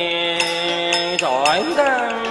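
Chầu văn ritual singing: a voice holds one long note, then bends it down and back up in a slow slide, over sharp percussion clicks.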